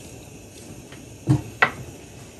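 Two quick knocks of kitchen utensils against a saucepan, close together about a second and a half in, over a faint steady background.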